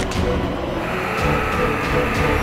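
Background music over the engine of a heavy military vehicle running on the move.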